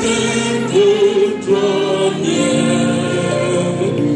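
Gospel song in a church-style service: a man singing into a handheld microphone, with a choir of voices joining in on held notes.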